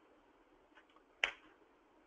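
Near silence, broken once a little over a second in by a single short, sharp click.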